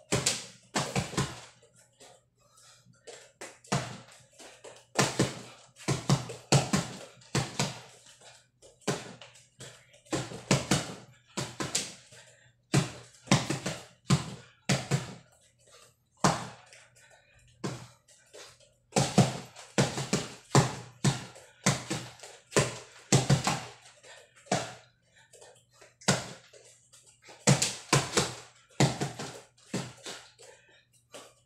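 Fists punching an upright mattress used as a punching bag: dull, sharp blows in quick flurries of several punches, with short pauses between combinations.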